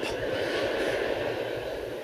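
Large audience laughing after a punchline, a dense crowd noise that slowly fades.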